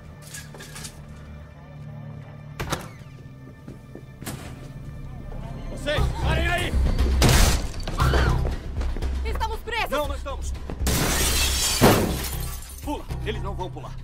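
Film action soundtrack: a tense music score swells from about six seconds in, under shouts. Two loud crashes of shattering glass come through it, a short one about seven seconds in and a longer, louder one about eleven seconds in.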